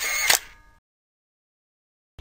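Camera shutter sound effect: a quick run of sharp clicks that dies away within about half a second.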